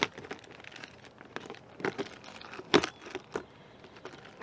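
Plastic zip-top bags crinkling and a clear plastic storage box being handled, with scattered sharp clicks and knocks, the sharpest right at the start.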